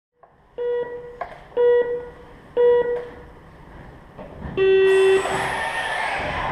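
RC race timing system's start countdown: three short beeps a second apart, then a longer, lower start tone. The electric RC cars then set off, a steady hiss that lasts to the end.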